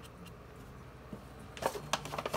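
Faint handling sounds of a plastic synth unit being moved on a workbench, with a few light knocks and clicks, the sharpest near the end.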